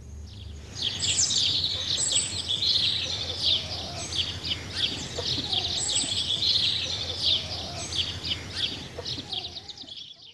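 A dense chorus of small birds chirping and twittering rapidly and continuously. It starts about a second in and fades away near the end.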